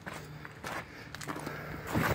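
Footsteps on gravelly dirt and dry leaves, irregular and fairly faint.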